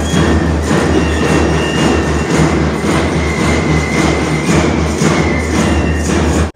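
Loud march-past music with a steady drumbeat of about two beats a second under a few held higher notes.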